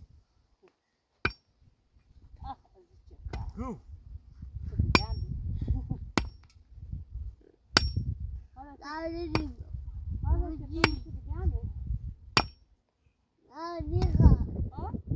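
A metal-headed digging tool striking stony ground: sharp, slightly ringing clinks about every one and a half to two seconds.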